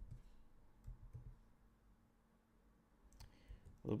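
Faint clicks of typing on a computer keyboard, a short run of keystrokes near the end, with a few soft low thumps in the first second.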